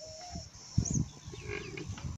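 A domestic water buffalo making a few short, low sounds, the loudest about a second in.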